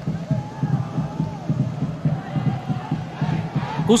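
Stadium crowd at a football match chanting and cheering, a steady mass of voices heard through the broadcast audio.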